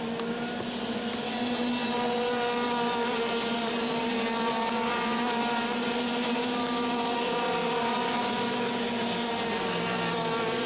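IAME X30 125 cc two-stroke racing kart engines running at high revs on track, a steady buzzing drone with little change in pitch.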